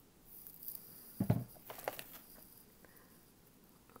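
Handling of a wooden-block rubber stamp, which is set down on a desk mat with a soft knock about a second in, followed by a few small clicks and light rustling.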